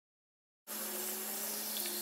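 Bathroom sink faucet running a steady stream of water into the basin. It starts suddenly, under a second in, after silence.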